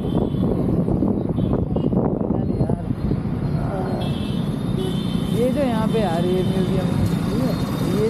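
Motorcycle engine running and wind noise as the bike rides slowly and pulls up, with indistinct voices in the middle.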